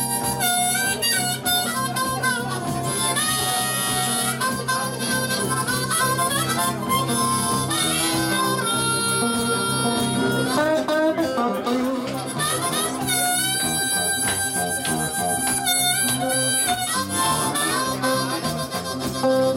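Live blues on electric guitar, an instrumental break between sung verses, with a lead line of sliding, bent notes over a steady rhythm.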